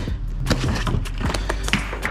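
A long cardboard shipping carton being handled and opened by hand, with scraping and a string of sharp taps and knocks, over background music.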